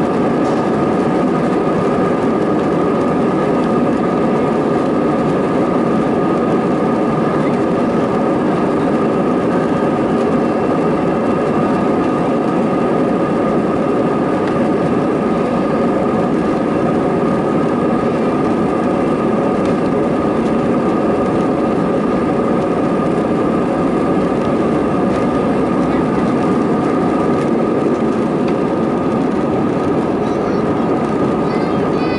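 Airbus A320's CFM56 turbofan engines at takeoff thrust, heard inside the passenger cabin: a loud, steady rush with several steady whining tones above it, through the takeoff roll and liftoff.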